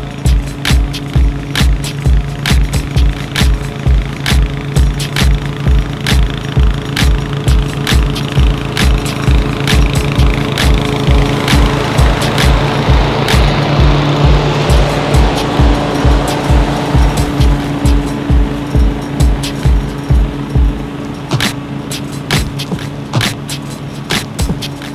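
Background music with a steady thumping beat that drops out near the end. Under it, a walk-behind mower, likely the Toro TimeMaster, runs steadily, its engine and cutting noise swelling as it passes close around the middle.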